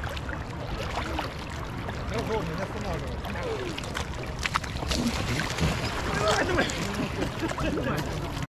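Many people's voices chattering and calling over a steady low rumble and wash of shallow sea water at the shoreline.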